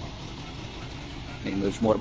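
Steady low outdoor background rumble. A man's voice begins near the end.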